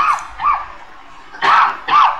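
A dog barking in short, high yips, about four of them in two quick pairs, louder than the talk around them.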